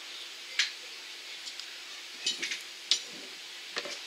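A handful of light clicks and clinks as a glass nail polish bottle and its cap are handled and set down, over the steady hiss of an electric fan.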